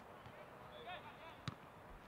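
Quiet on-pitch sound of a football match: faint distant players' voices, then a single short knock of a ball being struck about one and a half seconds in.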